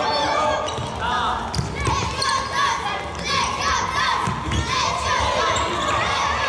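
Indoor youth futsal play echoing in a large sports hall: shoes squeaking on the court floor, ball thuds and kicks, and voices shouting throughout.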